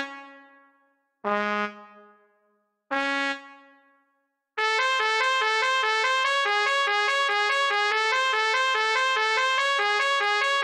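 B-flat trumpets play three short, separated notes, each left to fade away in reverberation with silence between. From about four and a half seconds in, the first trumpet plays alone: a steady run of fast repeated eighth notes.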